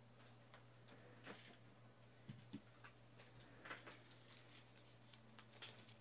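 Near silence: faint scattered clicks and ticks of trading cards being handled, over a faint steady electrical hum.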